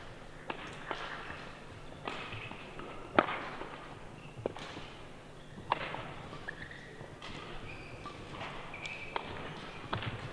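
Badminton rally: rackets striking the shuttlecock at irregular intervals of about a second, the sharpest hit about three seconds in, with brief squeaks of court shoes on the floor between hits.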